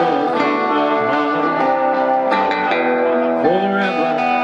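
Live band music: guitars strummed and picked, with a voice singing a held, bending line over them near the end.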